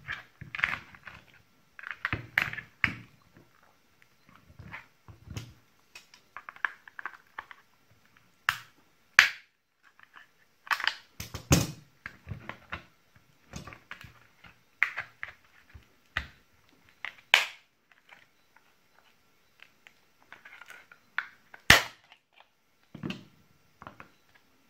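Plastic case of a cable-modem battery pack being pried open with a plastic pry tool and pliers: irregular scraping and creaking broken by several sharp plastic cracks and snaps as the glued seam gives.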